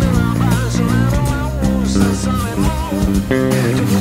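Bacchus Woodline Premium4 electric bass, played with fingers through a Fractal Axe-FX II preamp, along with a rock band recording. A lead melody bends in pitch above the bass line.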